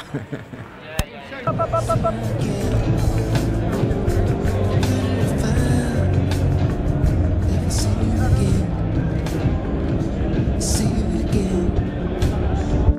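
A man laughs briefly about a second and a half in, then loud music comes in and continues.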